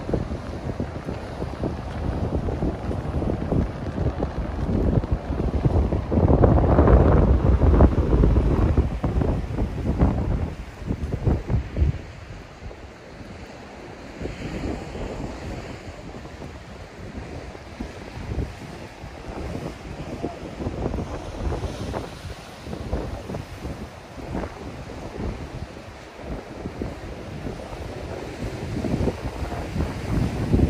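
Wind buffeting the microphone in gusts, heaviest in the first dozen seconds and then easing off, over the wash of ocean surf breaking on the rocks below.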